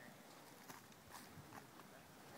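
A few faint footsteps on wood-chip ground, over near silence.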